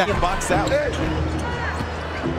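Basketball being dribbled on a hardwood court, over the steady hum of an arena crowd.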